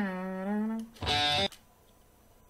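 A man sings one held note, with a short slide down into it, showing how the guitar line should start. About a second in, a loud half-second burst of distorted electric guitar from the recorded track stops abruptly.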